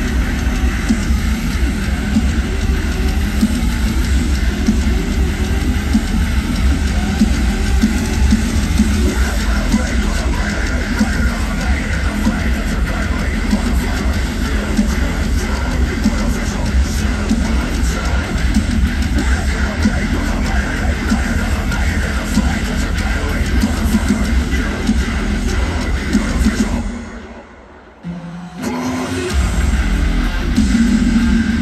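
Live heavy metal band playing loud through a festival PA, with distorted electric guitars and drums, heard from the crowd. About 27 seconds in the band cuts out for a second or so, then crashes back in.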